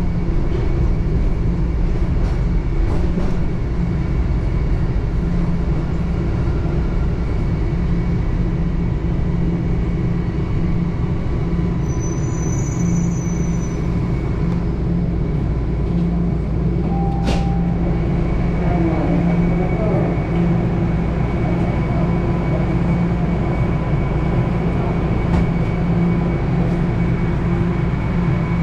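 Steady rumble and electrical hum inside a TTC Toronto Rocket subway car as it comes into and stands at the station. A brief faint high chime comes about halfway through, and a sharp click follows a few seconds later.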